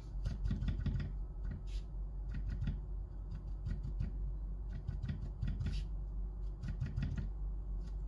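Irregular light taps and scuffs of a hand dabbing and rubbing a charcoal drawing on sketchbook paper, lifting charcoal to lighten a distant area.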